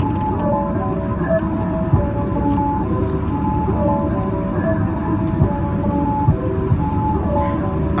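Steady low road and engine rumble inside a moving van's cab, with soft music of held melodic notes playing over it.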